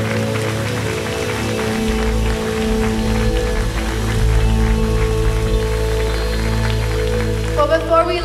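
Soft background music of held, sustained chords, with a deep bass tone coming in about two seconds in.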